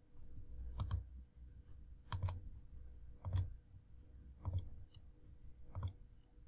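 Computer mouse clicks, five in all, about one a second, each adding another button to the row.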